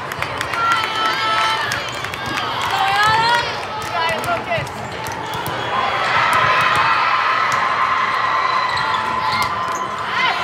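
Volleyballs thudding and bouncing on hard court floors in a large, echoing hall, with players' and spectators' voices throughout. From about six seconds in, a group of voices holds a sustained call.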